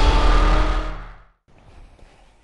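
Title-sequence soundtrack of music mixed with car sound effects, fading out within the first second into a brief silence, followed by faint studio room tone.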